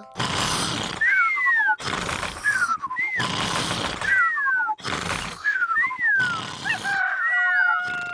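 Two cartoon pigs snoring in turn, each snore a rasping snort followed by a whistle that rises and falls, coming about once a second.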